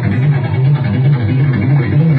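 Amplified electric guitar played live: a loud, low riff pulsing about three times a second.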